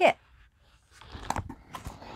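Rustling with a few sharp clicks and knocks as a large flat boxed kit is picked up and lifted, starting about a second in.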